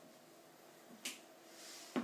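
Quiet room with a sharp click about a second in, a short rustle, and a louder knock at the end: handling noise as the guitarist gets up from his seat holding the guitar.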